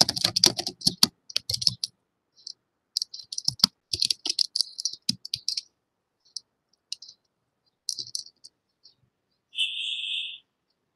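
Computer keyboard typing over an open microphone on a video call: quick runs of keystrokes, then scattered single clicks. Near the end comes a short electronic beep, the kind a conferencing app plays when a participant joins.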